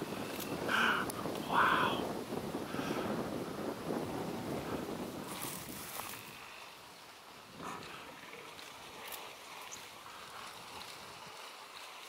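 Wind rumbling on the microphone over the open-air ambience, with two short vocal sounds about one and two seconds in. The wind noise eases off after about six seconds, leaving a quieter background with a few faint clicks.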